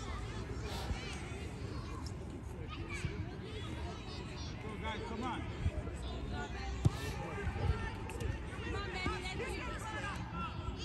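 Children's and adults' voices calling across an open soccer field over a steady low rumble, with one sharp knock about seven seconds in.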